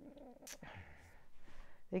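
Tarot cards handled on a wooden table: a sharp click about half a second in, then a faint rustle of cards sliding.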